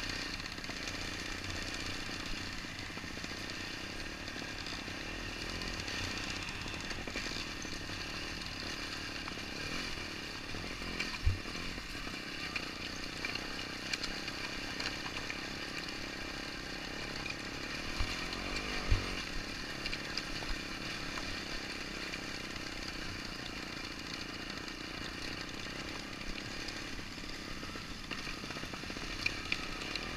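Trials motorcycle engine running steadily at low speed down a rocky slate track, with a few dull knocks from the bike jolting over stones about a third of the way in and again near two thirds.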